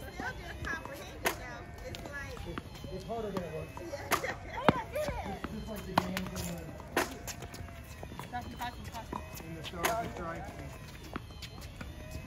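Tennis rackets hitting tennis balls: about six sharp pops spread a second or more apart, over the background chatter of children's voices.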